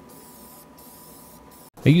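Aerosol can of white gloss spray paint spraying with a faint steady hiss and two brief breaks. It cuts off just before the end.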